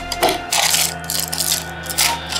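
Small items clicking and rattling as hands rummage through a wooden medicine box of bottles and blister packs, with background music underneath.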